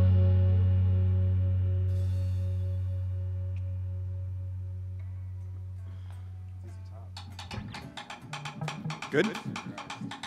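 The final chord of an electric guitar and bass ringing out and slowly fading. About seven and a half seconds in it stops abruptly, followed by a fast, even run of light clicks and a short spoken "Good?" near the end.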